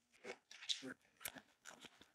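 Faint, irregular clicks and rustles of camera gear being handled: a rotatable lens collar and a camera with its lens picked up off a desk and fitted together.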